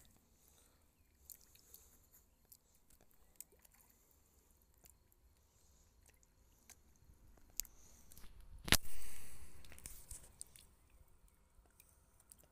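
Pond fish taking floating feed at the water's surface: scattered small clicks and pops, faint against a quiet background. About nine seconds in, one louder sharp noise is followed by a short wash of sound.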